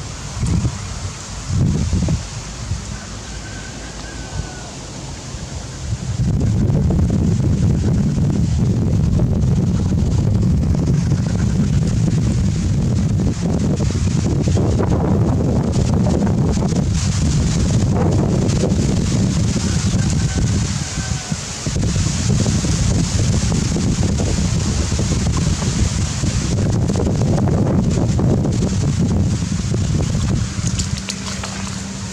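Wind buffeting the camera microphone: a couple of short bumps in the first seconds, then a loud, steady low rumble from about six seconds in that lasts almost to the end.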